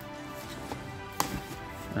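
Quiet background music, with a single sharp click about a second in from the cardboard toy box being handled.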